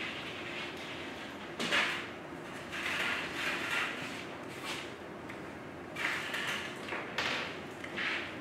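Scattered soft scrapes and rustles of hands at work on a table: knives spreading frosting on plates and plastic packets being handled, a few short noises spread over several seconds.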